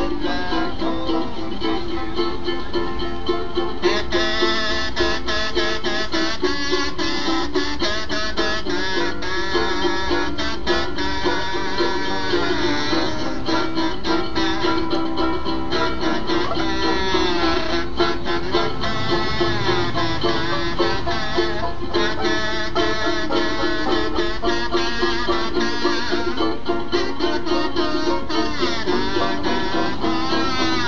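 Banjo and ukulele playing an old-time tune together, with a buzzy, sliding melody blown on a horn held in a mic stand, which comes in about four seconds in. It is an instrumental break, with no singing.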